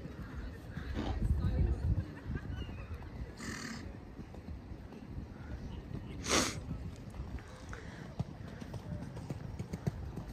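Horses cantering on a sand arena, hooves thudding softly, loudest about a second in. Two short, breathy horse snorts come about three and a half and six seconds in.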